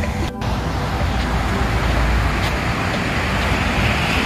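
Steady wash of surf breaking on a sandy beach, with a strong low rumble underneath. The sound drops out for a moment just after the start.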